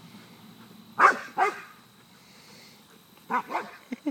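Bouvier des Flandres barking in play, two short barks about a second in and two more near the end.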